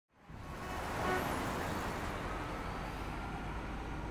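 Steady street traffic noise with the low rumble of a bus engine running, fading in from silence at the start.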